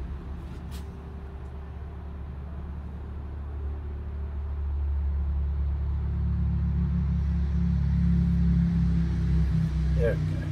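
Low engine rumble from a motor vehicle, growing steadily louder through the second half as it draws near.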